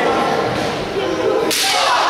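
A long wooden stick cracks once, sharply, as it is swung onto a wrestler about one and a half seconds in, with crowd voices in a large hall around it.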